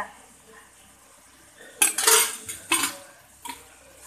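Metal slotted ladle scraping and clanking against a metal kadai of chicken gravy: quiet at first, then a few short, sharp scrapes about two seconds in and again near the three-second mark.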